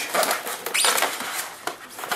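Styrofoam packaging squeaking and rubbing as a large plastic model tank is pulled up out of its foam insert, with a short rising squeak about a second in.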